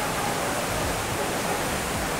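Decorative fountain's water jets splashing, a steady rush of falling water that begins abruptly.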